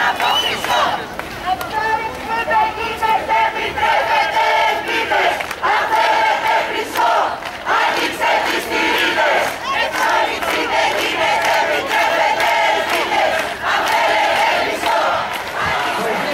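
Large crowd of marchers shouting slogans together, many voices rising and falling in repeated phrases.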